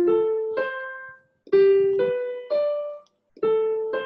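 Roland digital piano on its concert grand sound, played right hand in rising three-note broken chords on the notes of the A natural minor scale. Each chord's notes come about half a second apart and each new chord starts a step higher, with a short pause between chords.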